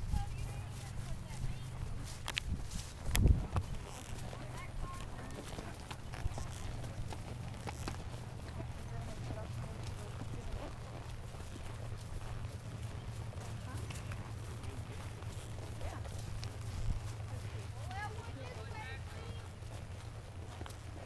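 Horses walking in single file, their hooves clopping on a grass and dirt track, under a steady low rumble. A loud knock comes about three seconds in, and riders' voices are heard now and then, most plainly near the end.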